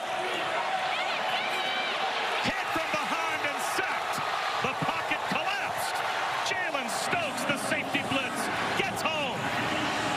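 Stadium crowd cheering and shouting: steady crowd noise with many short rising and falling cries and scattered claps over it. The home fans are reacting to a third-down stop that forces fourth down.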